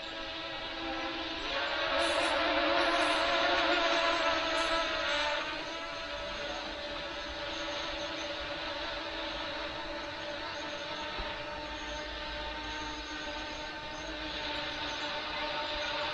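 Small F007 Pro quadcopter drone in flight, its motors and propellers giving a steady whine, louder for a few seconds near the start and then holding level.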